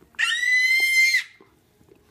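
A dog's squeaky ball toy squeezed in its jaws, giving one long, steady, high squeak of about a second.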